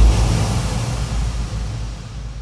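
The fading tail of a sudden low boom with a wash of noise, a transition sound effect between segments, dying away steadily over about two seconds.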